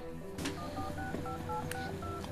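Touch-tone telephone keypad being dialed: a quick string of short two-tone beeps, one per key press, starting just after half a second in and preceded by a click. Soft background music runs underneath.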